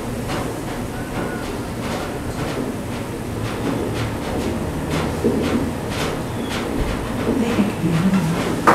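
Soundtrack of a projected film heard through room speakers: a low rumble with irregular clicks and knocks, about one or two a second.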